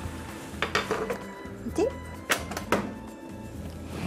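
Background music playing over a few sharp knocks and clinks as the countertop oven's door and tray are handled while the breadcrumbs toast.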